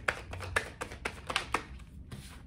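A tarot deck being shuffled by hand: a quick, uneven run of about eight crisp card clicks that stops shortly before the end.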